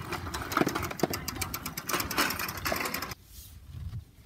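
Small child's bicycle rattling and clicking as an adult rides it over pavement, over a low rumble of wind on the microphone. The sound cuts off suddenly about three seconds in.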